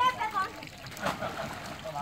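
Water splashing and sloshing in a small inflatable pool as a child jumps in, with a few brief splashes about a second in.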